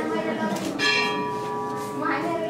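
A metal temple bell struck once a little under a second in, then ringing on with several clear, steady tones that slowly fade.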